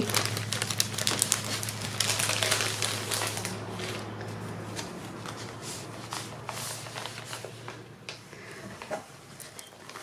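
Clear plastic sleeve crinkling and paper scraps rustling as a bundle of scrapbooking papers is pulled out of the bag and handled, with busy crackling in the first few seconds that thins out after.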